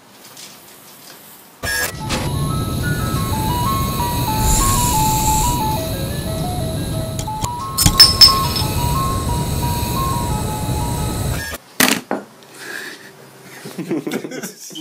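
A simple tinny jingle tune playing over a low mechanical whirring as the Coke bottle-opener bot runs, with sharp clicks about eight seconds in as the cap pops off the bottle. The whole sound starts suddenly about two seconds in and cuts off suddenly.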